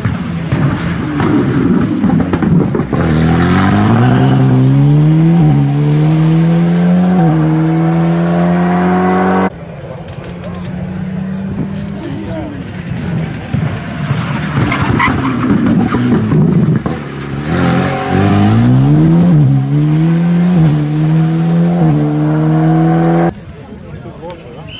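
Two Alpine A110 rally cars, one after the other, each accelerating hard toward the microphone. The engine note climbs through the gears in three or four quick upshifts, then holds high and steady. The first pass cuts off abruptly about ten seconds in, and the second builds the same way and cuts off near the end.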